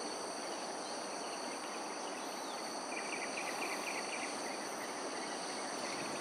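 Steady, high-pitched drone of insects in several pitched bands over an even background hiss, with a quick run of short chirps about three seconds in.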